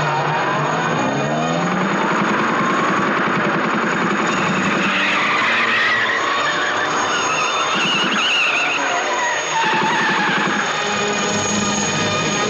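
Car engine revving hard with tyres squealing as the car speeds along, with rising and wavering whines through the middle.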